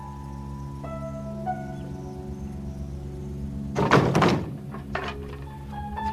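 Wooden boards tossed into a pickup truck's bed land with one loud clattering thunk about four seconds in, followed by a smaller knock a second later. Soft background music with held notes plays throughout.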